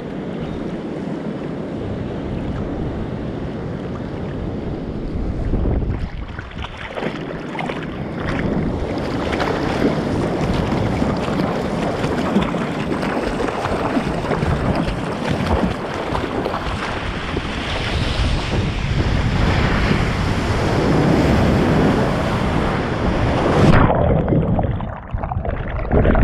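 Sea water lapping around a surfboard, with wind on the microphone. From about nine seconds in, hand strokes paddling the board splash over and over and get louder. Right at the end the sound goes muffled as it drops under the water.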